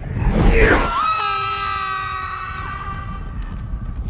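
A character's long, high-pitched scream, held steady for about two seconds from about a second in and dropping at the end. It follows a short rising whoosh and sits over a continuous low rumble.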